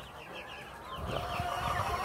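A flock of young white broiler chickens peeping, many short overlapping cheeps in quick succession.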